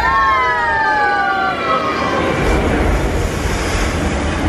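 Mickey and Minnie Mouse's cartoon falling yells on the ride's soundtrack: two long, high-pitched cries that slide downward in pitch, fading about two seconds in. A rushing noise runs under them and carries on alone after the cries fade.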